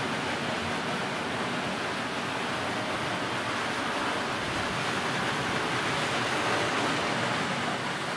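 Steady, even hiss of room background noise, with no distinct knocks or clicks.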